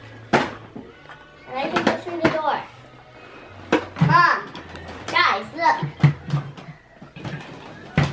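A young child babbling and making short vocal sounds in several bursts, with a few sharp clacks of small wooden toy pieces.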